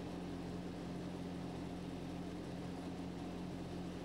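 A steady low machine hum holding several fixed low tones, unchanging throughout.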